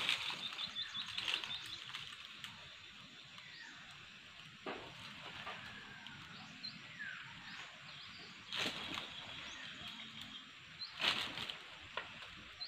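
Quiet outdoor ambience with small birds chirping faintly now and then, and three short rustling noises about five, nine and eleven seconds in.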